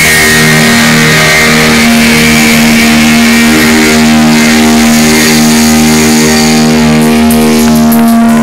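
Live rock band's distorted electric guitars and bass holding one sustained chord that rings on steadily without changing, with a few sharp hits near the end.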